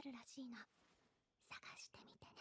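Faint whispered speech: a spoken line trails off, then a voice whispers softly and breathily, close to the ear.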